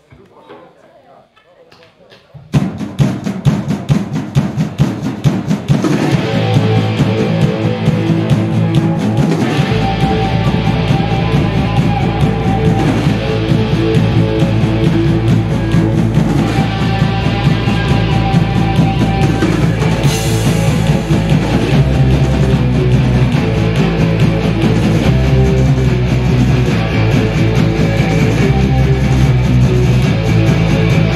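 Punk rock band playing live with electric guitars, bass guitar and drum kit as a song kicks off about two and a half seconds in after a near-quiet lead-in. A deep bass line joins about ten seconds in.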